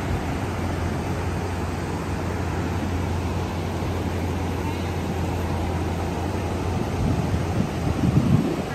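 Steady rushing of muddy runoff flowing across a road after a landslide, mixed with rain and wind noise on the microphone, over a low steady engine hum that fades about seven seconds in.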